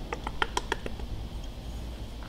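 A run of faint, quick light ticks and taps over the first second, then quieter: oil being drizzled from a glass bottle over part-cooked potato fries in an air fryer bowl.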